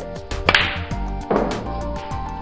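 Snooker shot: a sharp clack of the cue striking the cue ball about half a second in, then a second knock of the balls under a second later as a red is potted. Background music plays throughout.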